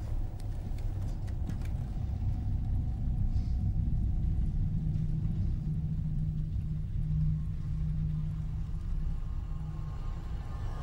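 A low, steady rumbling drone of horror-film sound design, with a deep hum that comes in about halfway through and holds nearly to the end.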